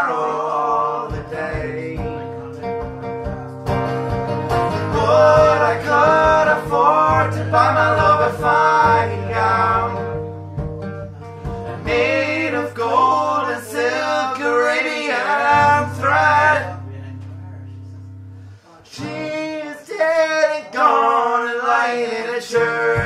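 Acoustic guitar strumming chords under two men singing a folk ballad, with long held notes that waver in pitch. The sound fades to a brief lull about three quarters of the way through, then guitar and voices pick up again.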